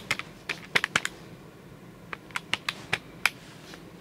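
Keys of a handheld electronic calculator being pressed: a quick run of clicks, a pause of about a second, then a second run of clicks.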